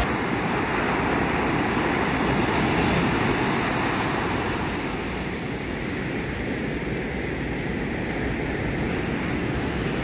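Surf breaking and washing up a sandy beach: a steady rush of waves, with some wind on the microphone.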